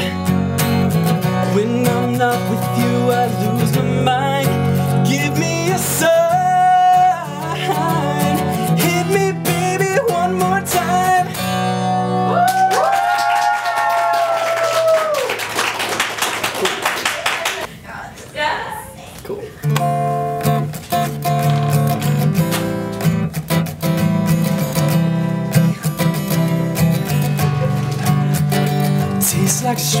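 Acoustic guitar strummed under a man's singing, ending on long held notes about twelve to fifteen seconds in. A few seconds of noise without guitar follow, then the guitar starts a new strummed pattern around twenty seconds in.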